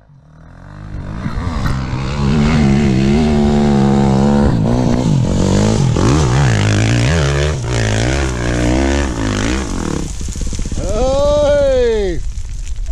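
2021 Husqvarna FX350 dirt bike's single-cylinder four-stroke engine revving up and down as it is ridden over rough ground. The sound fades in over the first couple of seconds, and near the end one long rev rises and falls.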